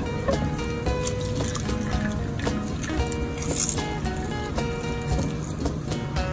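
Background music, with onion juice dripping and trickling into a ceramic bowl under it as grated onion is squeezed by hand.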